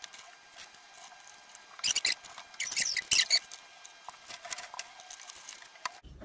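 Dry wooden branches and roots being handled and set into an empty glass aquarium, with scraping, clicking and rustling as wood rubs against glass, sand and other branches. The sounds come in scattered clusters, busiest about two and three seconds in.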